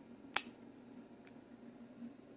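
A single sharp plastic click, then a much fainter tick past the middle, as the snap-on lid of a small plastic sauce portion cup is prised off by hand.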